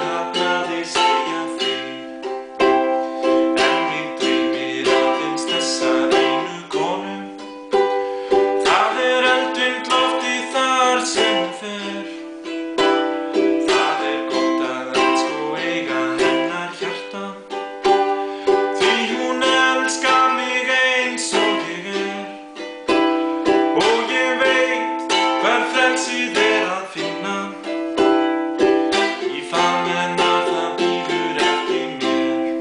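Tanglewood ukulele strummed in steady chords, with a man singing along in Icelandic.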